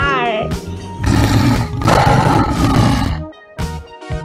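Recorded tiger roar, one long growling roar starting about a second in and lasting about two seconds, over children's background music.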